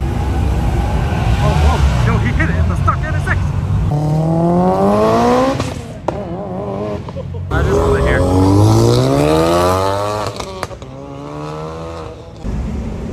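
Cars accelerating hard down a street past a crowd, with a heavy engine rumble at first, then two long rising engine pulls, about four and about eight seconds in, each climbing in pitch as the car speeds away. Spectators' voices run underneath.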